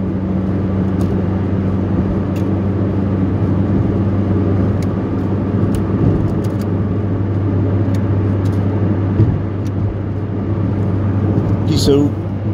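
Car being driven, heard from inside the cabin: a steady low engine and road hum with tyre noise, a few faint ticks, and a brief high squeak near the end.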